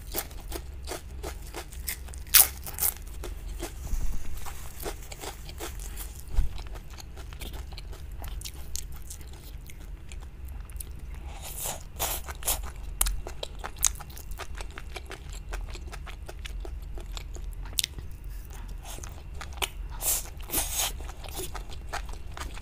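Close-miked mouth sounds of a person eating crispy fried skewer food: sharp crunching bites a couple of seconds in, then steady chewing. Louder bursts of biting come about halfway through and again near the end.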